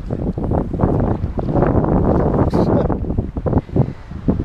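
Wind buffeting the microphone of a camera on a sea kayak, a loud, rough rumble, with the sea lapping underneath.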